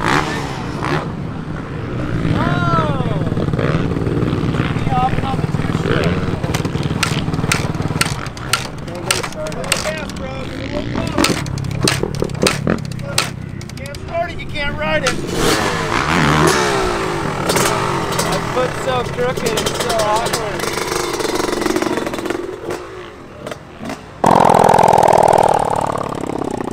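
People talking and laughing over a motorcycle engine running in the background. About two seconds before the end, a much louder dirt bike engine sound cuts in suddenly and holds steady.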